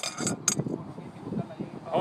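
Steel balls clinking inside a sealed Speedy moisture tester's metal vessel, where they mix the soil sample with the calcium carbide reagent. The last couple of sharp clinks come in the first half second as the rolling stops, then only faint handling of the vessel.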